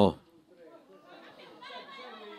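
The commentator's word cuts off right at the start, then faint distant voices: players calling out across a football pitch.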